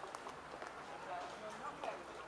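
Faint, indistinct talking, with a few brief clicks.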